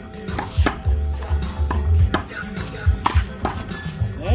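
Music with a heavy bass beat, with several sharp smacks of a handball on the concrete wall and court during a rally.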